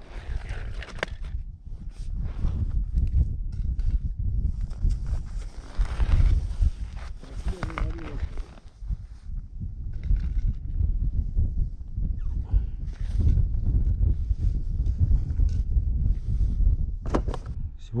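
Broken river ice crunching and knocking as chunks are moved by hand around a freshly made ice hole, over a constant low rumble.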